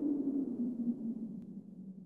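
Low drone of a car sound effect winding down, falling slightly in pitch and fading away after a tyre screech has stopped.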